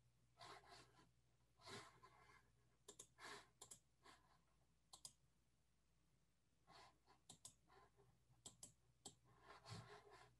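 Near silence with a faint low hum and scattered faint clicks of a computer mouse and keyboard.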